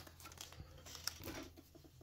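Faint crinkling and light clicks of a thin clear plastic sleeve being handled around a small cardboard box.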